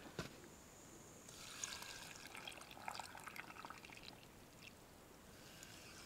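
Faint trickle of water poured from an aluminium mug into a glass jar packed with cucumber slices, starting about a second in and fading out past the middle.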